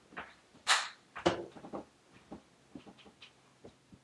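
Soft handling noises: a brief swish and a scatter of light taps and clicks from a makeup brush and powder compact being handled.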